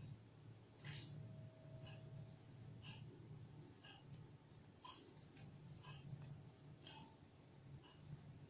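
Near silence: a steady faint high-pitched tone, with faint soft ticks every half second to a second as a metal crochet hook works yarn.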